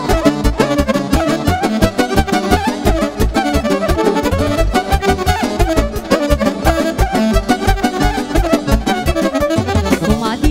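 Romanian hora party music in an instrumental passage: a violin leads, with accordion, over a fast, steady beat.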